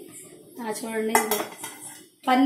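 A steel plate lid is lifted off a steel cooking pot and metal tongs go into the rice, with a couple of sharp metal-on-metal clinks about a second in.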